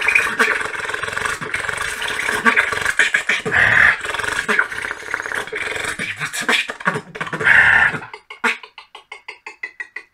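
Human beatboxing: a dense stream of rhythmic percussive mouth sounds with bursts of hiss. Near the end it thins to a lighter run of short, evenly spaced clicks, about five a second.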